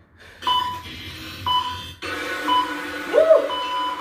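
Electronic interval-timer beeps: three short beeps about a second apart, then a longer held beep near the end, signalling the end of an exercise interval. From about halfway a denser layer of sound sits under the beeps, with a brief rising-and-falling glide just after three seconds.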